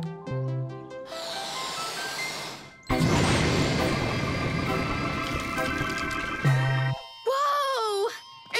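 A cartoon balloon-powered toy car lets out a hiss of air, then whooshes off with a loud rushing sound from about three seconds in, lasting about four seconds, under upbeat cartoon music. A voice exclaims near the end.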